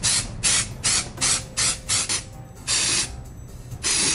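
Aerosol mold release sprayed in a quick series of short hissing bursts, about three a second, with one longer spray near the end, coating the inside of a cardboard tube mold before silicone rubber is poured.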